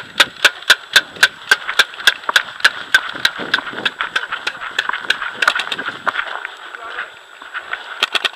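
Paintball marker firing a steady string of shots, about four a second for the first three seconds, then a quick burst of several shots around the middle.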